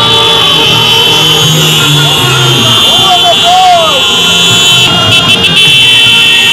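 Loud street din of a crowd, many voices mixed with passing road traffic, over a steady high whine. Two short rising-and-falling calls stand out near the middle.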